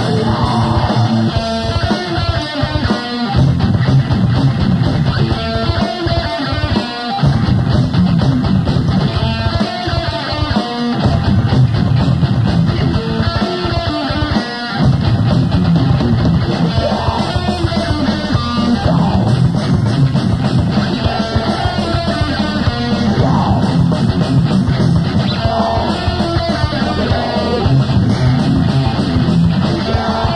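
Live rock band playing loud, distorted electric guitar over a drum kit.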